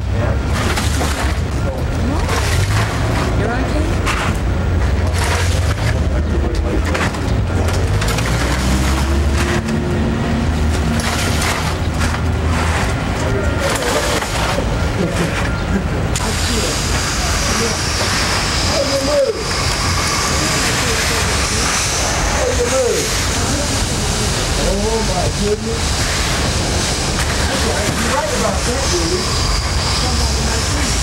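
Busy loading-area sound: a steady low rumble of a truck engine running that drops away about halfway through, with clatter from wire flower carts and indistinct voices.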